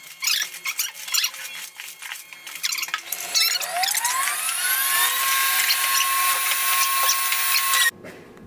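Hands digging through a cardboard box of foam packing peanuts, the peanuts rustling and squeaking. About halfway through, a whine rises in pitch, holds steady, and cuts off suddenly near the end.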